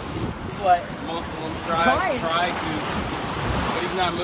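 Steady rushing of sea wind on the microphone and surf, growing stronger near the end, with short bits of indistinct talk about half a second in and around two seconds in.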